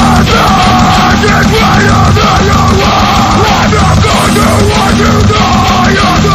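Heavy metal band playing loudly and steadily, with harsh yelled vocals over the band.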